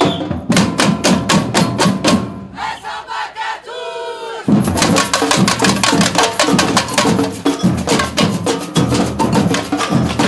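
Samba batucada percussion ensemble playing: surdo bass drums and hand-held tamborims beating a fast, steady groove. A few seconds in the drumming thins out in a break while a call rises and falls, then the whole group comes back in loudly together about halfway through.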